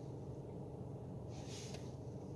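Quiet, steady low hum of a car interior, with one faint short breath-like hiss about one and a half seconds in.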